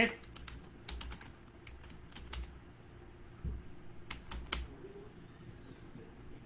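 Computer keyboard being typed on: short, irregular clusters of key clicks with pauses between them.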